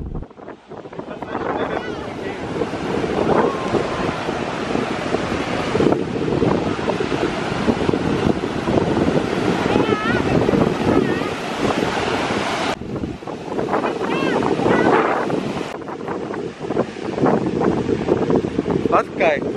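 Ocean surf breaking and washing up on a sandy beach, with wind buffeting the microphone.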